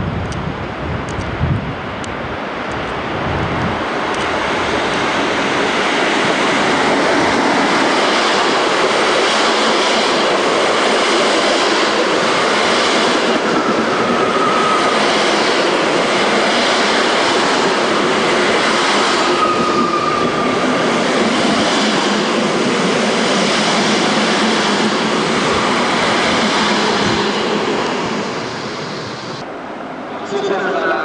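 Locomotive-hauled passenger train passing close by on the adjacent track. The rumble and rattle of the coaches' wheels on the rails builds over the first few seconds, holds steady, and fades near the end. Two brief wheel squeals come about halfway through.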